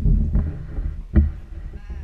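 A toddler's short, high-pitched wordless cries, bleat-like, with a thump from the large cardboard box being handled on the floor just over a second in.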